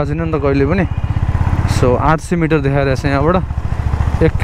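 A man talking over a Honda motorcycle engine running steadily at low road speed, with a short pause in the voice about a second in.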